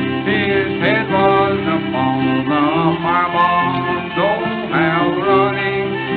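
Old-time string band playing an instrumental break between verses: a fiddle carries the melody with sliding notes over a steady banjo and guitar accompaniment.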